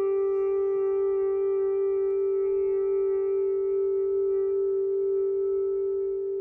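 A single long note on a clarinet, held dead steady and nearly pure, with a cluster of fainter overtones above it. It eases off slightly near the end.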